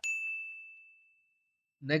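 Notification-bell sound effect of a subscribe-button animation: a single high ding that rings and fades away over about a second and a half.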